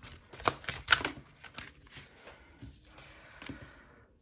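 Tarot cards being shuffled and handled, with a few sharp card snaps in the first second, then softer rustling as a card is drawn and laid down on the wooden table.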